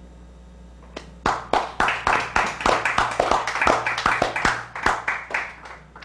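Small audience applauding, starting about a second in and dying away near the end, with separate claps heard.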